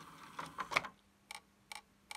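CD player disc tray drawing a disc in with a brief mechanical rattle, then the laser pickup mechanism ticking twice, about 0.4 s apart, as it tries to read the disc: the ticking of a worn laser that is failing to read the disc.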